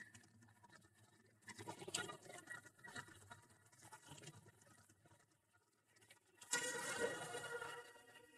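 Faint, irregular hoofbeats of a horse on dry dirt. A louder sound with faint steady tones comes in near the end.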